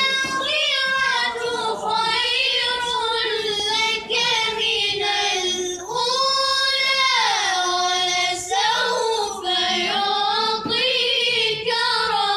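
A child reciting the Quran in melodic tilawat style: one high voice holding long, ornamented notes that glide up and down, with a few short breaks for breath.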